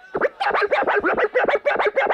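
DJ scratching a vinyl record on a turntable: a fast run of about a dozen back-and-forth strokes, roughly six a second.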